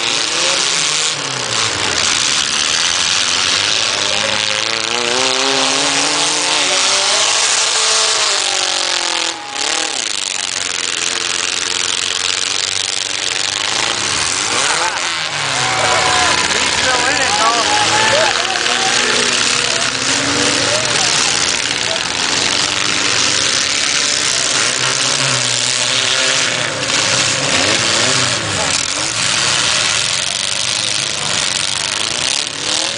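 Demolition derby compact cars' engines revving, their pitch rising and falling again and again as the cars push and ram in the mud, over the steady din of a large crowd.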